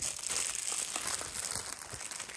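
Clear thin plastic packaging bag crinkling continuously as hands handle it and pull a braided hairpiece out of it.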